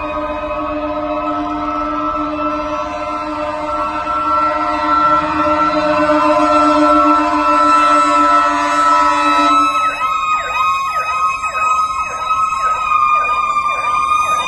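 Fire apparatus sirens on an emergency response, growing louder. A steady held chord of tones sounds for the first nine seconds or so, then a rapid yelp rising and falling about twice a second takes over, with one steady high tone still under it.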